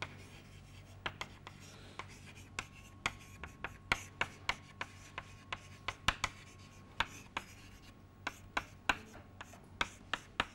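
Chalk writing on a blackboard: a string of short, sharp, irregular taps and brief scrapes, about two or three a second, as the letters are written.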